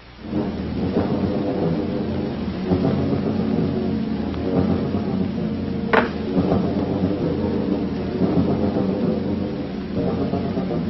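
Science-fiction rocket-ship engine sound effect: a steady, loud rumbling roar that starts suddenly, with one sharp crack about six seconds in.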